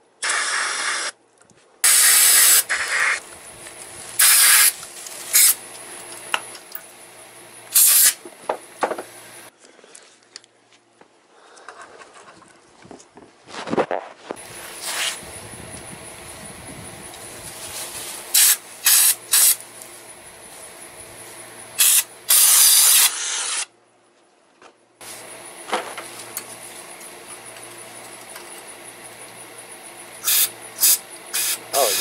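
Aerosol carburetor cleaner sprayed in short bursts: about ten loud hisses of half a second to a second each, separated by pauses.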